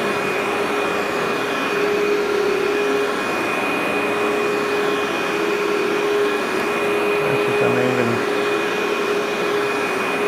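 Workhorse upright vacuum cleaner running steadily as it is pushed back and forth over low-level loop commercial carpet, a constant motor note with a high whine over the rush of air, drawing fine dust out of the carpet.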